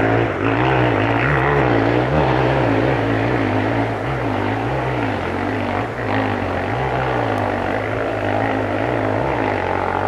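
Dirt bike engine revving hard while climbing a steep hill, its pitch rising and falling over and over with the throttle.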